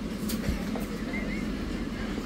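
Steady low hum of a shop's background noise, with a few faint clicks.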